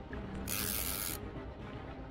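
Background music with a steady beat, over which comes a short splash of water from the hooked catfish thrashing at the surface about half a second in, lasting under a second.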